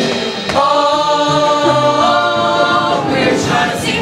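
Ensemble of young voices singing in harmony in a musical-theatre number: after a sharp accent about half a second in, a chord is held for about two and a half seconds, then the music moves on.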